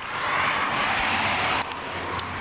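A motor vehicle going by on the road, a rushing noise of tyres and engine that swells and then cuts off suddenly about one and a half seconds in.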